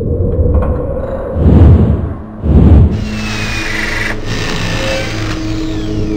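Outro logo sting: two deep booming hits about a second apart, then held synth tones with sweeping glides.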